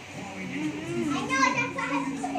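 Indistinct voices talking, a child's among them, over a steady low hum.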